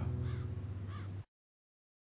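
A crow cawing twice over a low steady hum. All sound cuts off suddenly about a second and a quarter in.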